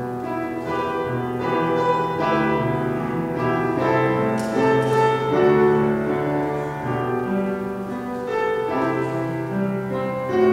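Slow piano music: held chords under a quiet melody, the notes changing about once a second.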